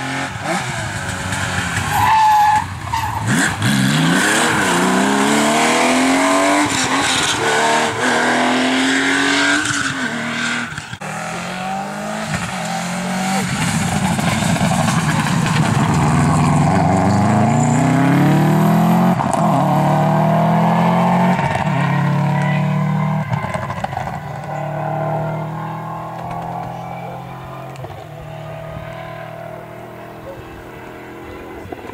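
Rally cars accelerating hard past at speed, one after the other. First a classic Porsche 911, its flat-six climbing through gear changes as it passes close by a few seconds in. Then a Subaru rally car revs up through several gears and fades into the distance near the end.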